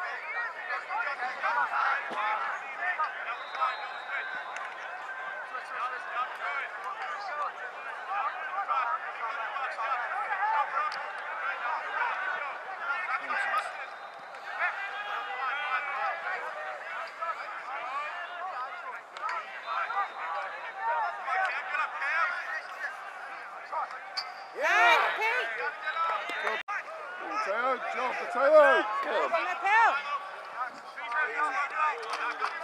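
Overlapping, indistinct chatter and calls from many voices, with a few louder shouts near the end.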